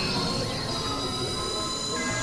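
Experimental electronic drone: several high, sustained synthesizer tones layered over a dense, noisy low rumble, with a few tones sliding in pitch.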